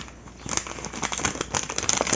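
Long paper supermarket receipt crinkling and rustling in a hand, a dense run of small crackles starting about half a second in.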